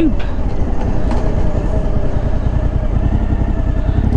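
Suzuki V-Strom motorcycle's V-twin engine running steadily under way, heard from on the bike with road and wind noise.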